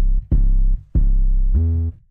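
808 sub-bass notes played from the NN-XT sampler in mono legato mode with portamento: three deep notes, the last sliding up in pitch about a second and a half in.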